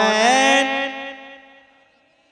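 A male naat reciter's unaccompanied singing voice, amplified through a microphone, holds the last note of a line. The note breaks off about half a second in and rings out, fading away over the next second.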